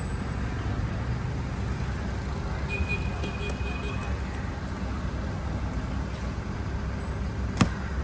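Steady low rumble of road traffic, with a single sharp knock near the end.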